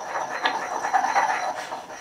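Stone pestle grinding around inside a stone mortar holding hand sanitizer gel: a continuous scraping of rock on rock through the goo, rising and falling in loudness with the strokes.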